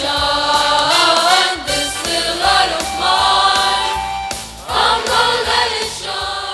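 Background music: several voices singing together in a choir over a steady low instrumental accompaniment.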